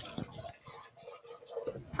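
Faint running and dripping water at a kitchen sink as a utensil is rinsed out, with a few small ticks.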